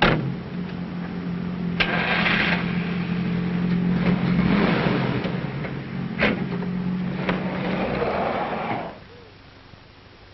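A motor vehicle's engine running steadily, with a sharp click at the start and a couple of sharp knocks partway through. The sound cuts off abruptly near the end.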